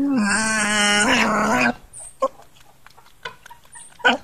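A caged musang gives one drawn-out call with a steady pitch, lasting under two seconds, while being touched at its food bowl, followed by faint clicks.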